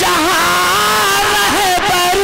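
A man's voice singing a naat through a loud public-address system, holding long wavering notes with melodic turns and no break.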